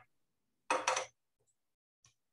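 A brush clinking and scraping against a pot of melted encaustic wax, in one short burst about a second in.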